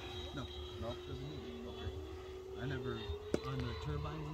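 Distant whine of a Freewing Avanti S 80mm electric ducted-fan model jet in flight: a steady tone that rises slightly near the end, heard under men talking. A single sharp click comes about three seconds in.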